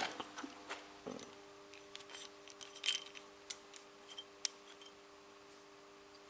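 Faint, scattered metallic clicks and taps of a brake-line flaring tool being handled, its yoke and bar knocking lightly, with the sharpest click about four and a half seconds in.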